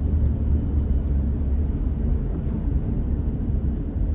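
Steady low rumble of a car's engine and tyre noise, heard from inside the cabin while driving at low speed.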